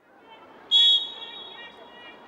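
A referee's whistle gives one short, loud, shrill blast about two-thirds of a second in, fading away over the faint open-air sound of the pitch.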